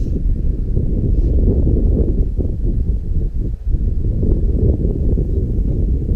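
Steady, loud low rumble of wind buffeting the action-camera microphone.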